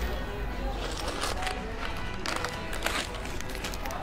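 Bistro background: music playing at a low level under an urban hum of street traffic, with a few light clicks.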